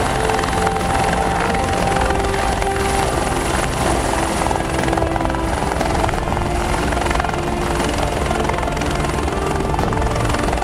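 Military utility helicopter's rotor and turbine running steadily as it hovers low and sets down on its skids, with background music under it.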